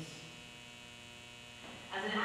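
A faint, steady electrical hum in a gap between spoken phrases, the background tone of the sound system.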